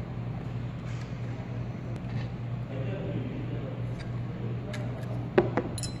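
A few sharp metallic clicks from about four seconds in, the loudest near five and a half seconds, as a small tapered cross pin is worked out of a piston rifle's pressure sleeve with an Allen key and the upper is handled. A steady low hum runs underneath.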